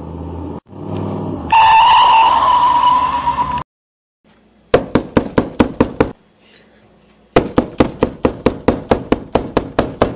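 A car engine running, then a car horn sounding one long steady blast of about two seconds, the loudest sound. After a pause comes rapid knocking on a door in two runs, about five knocks a second.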